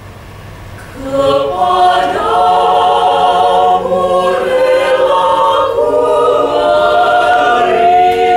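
A small mixed-voice a cappella ensemble singing. A short hushed pause is followed, about a second in, by the voices re-entering in close harmony with long sustained chords.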